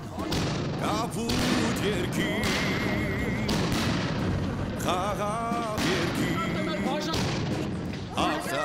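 A fireworks display: aerial shells bursting in a rapid run of bangs and crackles over a continuous rumble, with wavering warbling tones underneath.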